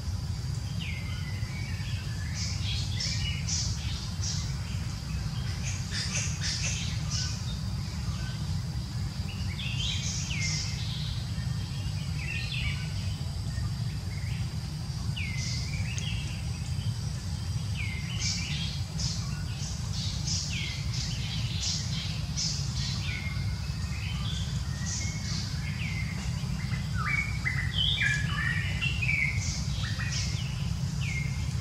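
Forest birds chirping and calling in quick repeated bursts, busier near the end, over a steady low rumble and a thin, steady high-pitched tone.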